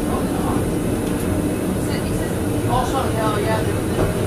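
Blackpool Centenary-class tram running slowly, a steady low rumble of its motors and wheels on the rails heard from inside the cab. Voices come over it about three seconds in.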